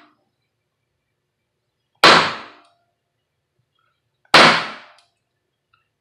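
Mallet striking an X503 basket weave stamp on leather backed by a granite slab: two sharp strikes about two seconds apart, each dying away within about half a second.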